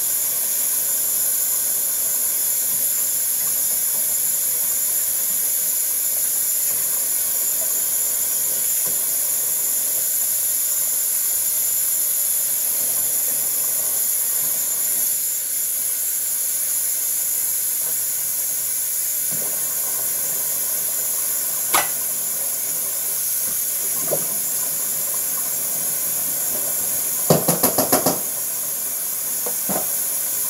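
Kitchen tap running steadily into the sink during dishwashing, a constant hiss of water, with a couple of sharp dish clinks and, near the end, a quick rattle of about six clicks.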